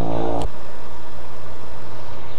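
Petrol pump nozzle filling a motorcycle's fuel tank: a loud, steady hum with rushing fuel. A sharp click about half a second in, after which the hum's higher tones drop away and a low hum and rushing noise carry on.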